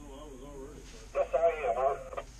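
A man's voice over a two-way radio, faint at first and louder from about a second in.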